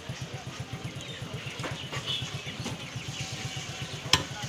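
A small engine idling nearby with a rapid, steady low throb. A couple of faint knocks from a knife striking the wooden chopping block come through about halfway in.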